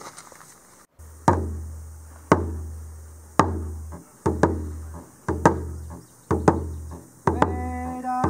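Hand drum beaten steadily about once a second, each stroke leaving a deep ring that fades, the later strokes doubled. Near the end a singing voice comes in on a long held note.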